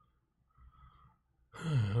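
A man sighs, voiced and breathy, falling in pitch, about a second and a half in after a quiet stretch.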